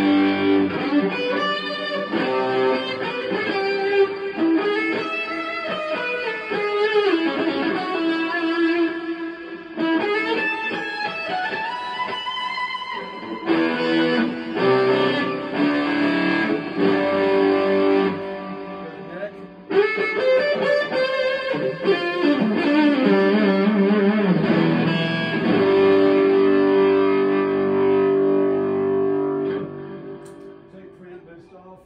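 Electric guitar played through an overdrive circuit: single notes and chords with several string bends, ending on a long held chord.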